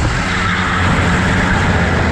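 Go-kart engine running steadily under throttle through a corner, heard close up from the driver's seat.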